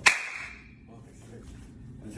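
A single sharp slap of two hands meeting in a clasping handshake, with a short ringing tail.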